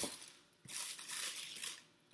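Clear cellophane crinkling as hands tuck it into a gift box: a short crackle at the start, then a longer rustle from just past half a second in until shortly before the end.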